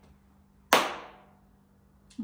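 A single sharp hand clap, loud and sudden, ringing off briefly in a bare room.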